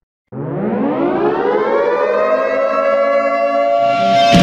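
A siren winding up as an intro sound effect: a loud tone starts abruptly a moment in, rises steeply in pitch over about two seconds, then levels off and holds.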